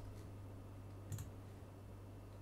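A single faint computer mouse click about a second in, over a low steady hum.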